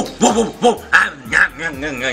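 A man imitating a dog: about five short, sharp barks in quick succession, then a longer wavering whine near the end.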